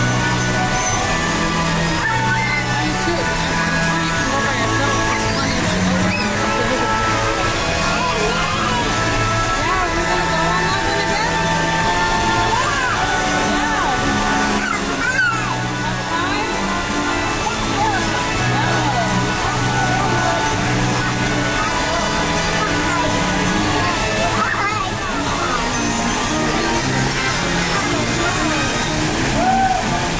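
Ride music playing over the steady splashing of a fountain, with background voices from a crowd.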